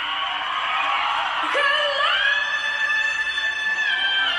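A male singer's live vocal over audience screams and cheers: the voice sweeps up a little before halfway and then holds one very high note for about two seconds.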